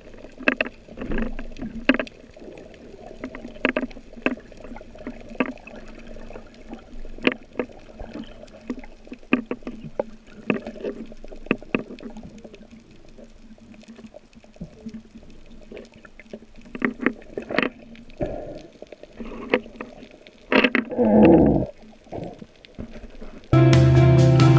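A freediver's underwater camera audio: a steady low hum with frequent muffled clicks and knocks from the diving and the speargun gear, a louder wavering rush of water and bubbles about three seconds before the end, then background music comes in just before the end.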